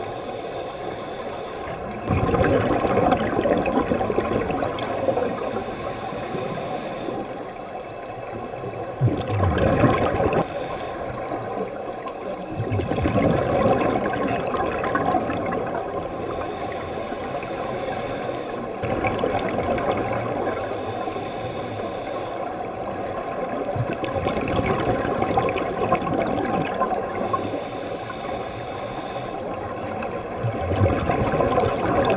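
Underwater sound of scuba regulator exhaust bubbles: continuous muffled bubbling and gurgling that swells in several surges as divers breathe out.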